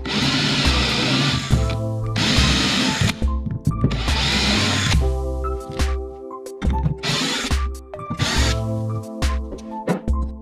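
A power drill spinning a cage countersink cutter into a lead counterbalance weight, in about five short bursts of a second or so, over background music.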